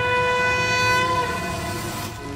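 A long, loud, horn-like note held on one pitch with a strong series of overtones. Its low note lifts slightly and stops a little over a second in, while the higher tones hang on until near the end.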